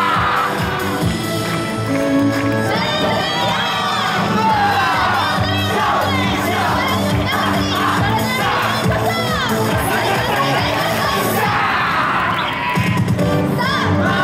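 Many voices shouting and cheering together over yosakoi festival dance music, typical of dancers' group calls during the routine; the music comes back in strongly near the end.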